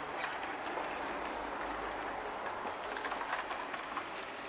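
Powered wheelchair rolling along a tarmac road: a steady rolling rumble with small clicks and rattles throughout.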